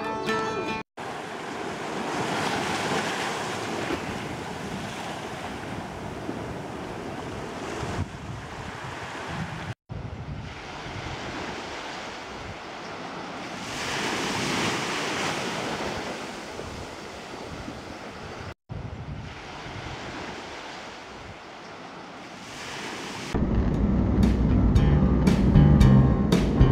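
Ocean surf breaking on the shore, a rough, rolling rush that swells and eases, with wind on the microphone. It comes in three takes separated by short cut-outs. Music with a beat comes in near the end.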